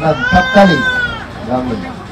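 A high-pitched, drawn-out cry lasting about a second, rising slightly and then falling, heard over a man talking.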